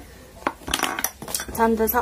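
A few light clicks and clinks of a plastic lipstick tube and its cap being handled, then a woman's voice starts near the end.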